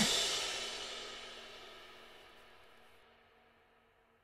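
The final crash-cymbal hit and closing chord of a rock song ringing out, fading steadily to near silence over about three seconds; the cymbal is an electronic drum kit's.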